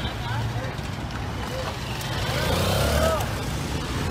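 Road traffic running with a steady low engine rumble, swelling about two seconds in, with indistinct voices in the background.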